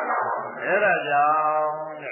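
A Buddhist monk's voice reciting in a chanting tone, drawing one syllable out into a long, level held note in the second half.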